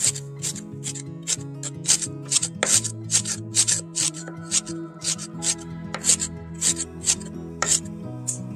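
Kitchen knife mincing celery on a wooden cutting board: quick, sharp chops at about three a second, with background music underneath.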